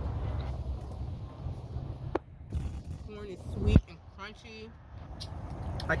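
Low steady rumble of outdoor traffic noise, with a sharp click about two seconds in and a heavier thump a little before four seconds in, the loudest sound, amid a few short murmured vocal sounds.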